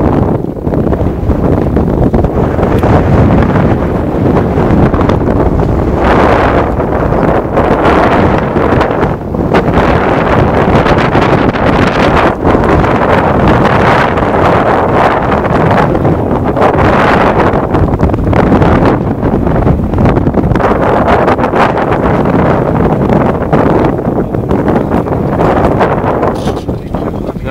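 Loud wind buffeting the microphone, a continuous rumble that swells and eases in gusts.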